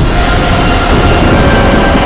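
Loud, steady rushing, rumbling sound effect, a whoosh building under the film score.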